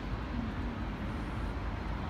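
Steady outdoor city background noise: a low rumble with faint snatches of distant voices.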